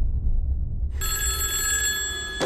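A deep low rumble, joined about a second in by a telephone ringing with a steady, high electronic tone.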